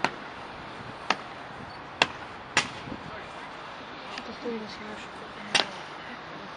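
Honour guards' boots striking the stone paving in slow ceremonial march step: five sharp heel strikes, roughly a second apart at first, then a pause of about three seconds before the last. Low crowd chatter runs underneath.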